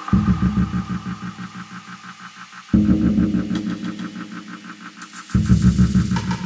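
Experimental electronic music mixed live on a DJ controller. A deep bass drone strikes about every two and a half seconds and fades away each time, under a fast even pulse. Quick high ticks come in near the middle and again near the end.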